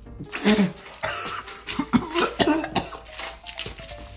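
A man coughing repeatedly in short, irregular fits after gulping water mixed with salt and vinegar.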